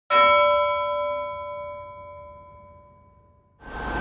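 A single bell-like metallic strike that rings with several tones and fades away over about three and a half seconds. Near the end, the steady rumble and hiss of a bus interior comes in.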